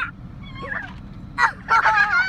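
A person laughing in short, high, cackling bursts, building near the end. Mixed in is a sharp knock about a second and a half in, as an ostrich's beak strikes the plastic food tub held out of the car window.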